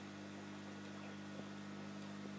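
Steady low electrical hum from running aquarium equipment, with a faint tick about one and a half seconds in.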